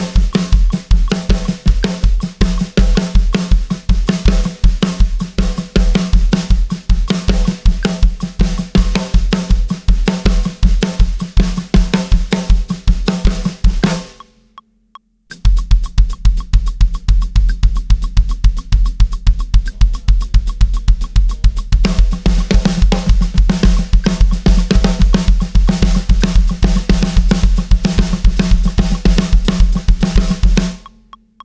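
Drum kit playing a steady rock groove: hi-hat on eighth notes, kick drum on the sixteenth-note offbeats, and snare. The playing stops for about a second and a half around 14 seconds in, comes back sparser, and is full again from about 22 seconds.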